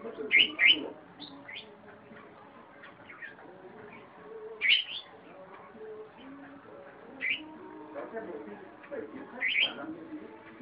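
Red-whiskered bulbul singing: about five short, loud whistled phrases with quick up-and-down sweeps, coming in irregular bursts, two close together near the start, then one in the middle and two more near the end.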